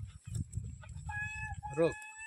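A rooster crowing: one long, held call that starts about a second in, over a low rumble.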